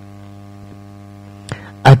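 Steady electrical mains hum, a low buzz with a row of evenly spaced overtones, left bare in a pause in the talk; a brief short noise about one and a half seconds in, and a man's voice returns near the end.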